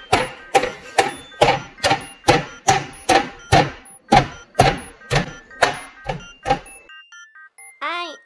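A toothed meat mallet pounding a raw chicken breast flat, a steady run of thuds about two or three a second that stops about six and a half seconds in.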